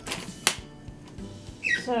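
Handling noise from a camera tripod being adjusted close to the microphone: a short rustle ending in one sharp click about half a second in.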